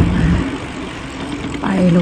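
Wind rushing over the microphone while riding a bicycle: a low, uneven noise, with a woman talking at the start and again near the end.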